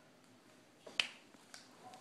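A single sharp click about halfway through, with a fainter tick half a second later, over faint room tone.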